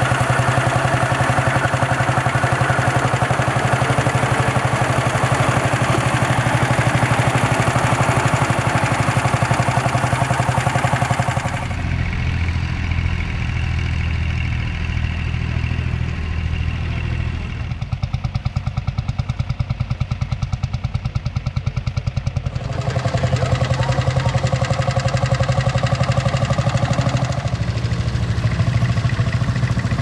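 Old farm tractor engines running steadily under load while pulling plows through stubble, with an even pulsing beat. The engine sound changes abruptly several times as one tractor gives way to another.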